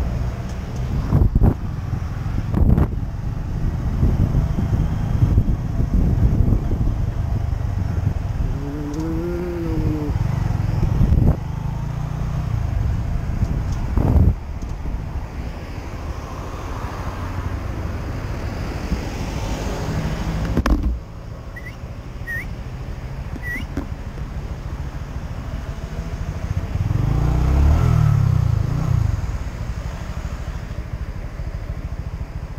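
Motorcycle engine running under a heavy rumble of wind on the helmet-mounted microphone as the bike rides slowly, its note rising and falling once about a third of the way in. The sound drops suddenly about two thirds through to a steadier, quieter running, with a few faint chirps and another swell in engine note near the end.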